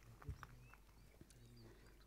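Near silence: faint outdoor background with a few faint, short bird chirps and a soft thump about a quarter second in.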